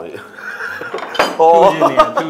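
Metal spoon and fork clinking and scraping against a ceramic bowl of food, with a sharp clink a little after a second in. A person's voice cuts in loudly near the end.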